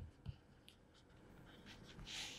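A pen writing: a few faint, short scratchy strokes and small taps, very quiet.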